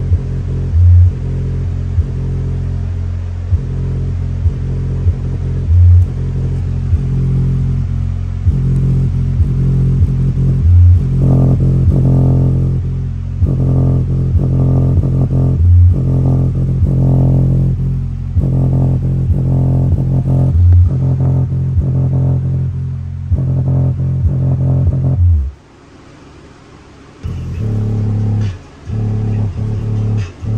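Westra 4.5-inch woofer in a box playing bass-heavy music loudly, the sound dominated by deep bass with a loud hit about every five seconds. Near the end the sound drops away for about two seconds, then the music comes back.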